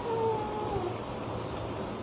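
A single high-pitched drawn-out call that slowly falls in pitch and dies away about a second in, over a steady background hiss.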